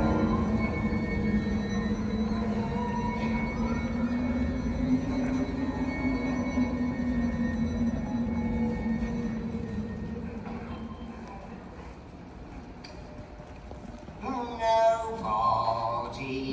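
Slow stage-musical orchestral music with a long held low note and sustained higher tones, heard from the audience, fading down about three-quarters of the way through. Near the end a voice comes in over it.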